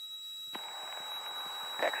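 Aircraft VHF radio heard through a pilot's headset. A low hiss with a faint steady tone jumps to a louder hiss about half a second in, as an incoming transmission keys on, and a voice begins near the end.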